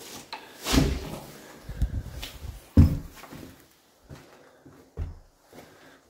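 A door being opened and people stepping through: a few separate dull knocks and thumps, the sharpest about three seconds in, with quieter shuffling between them.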